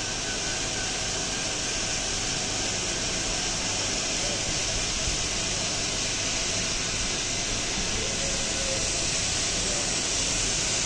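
Three small DC gear motors of an electric pole-climbing robot running together with a steady, even whir as the robot is driven along the pole by remote control.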